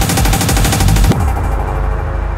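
Hardtek/tribecore electronic dance music: a rapid, machine-gun-like drum roll that cuts off about a second in. It gives way to a muffled low bass drone with the treble filtered out.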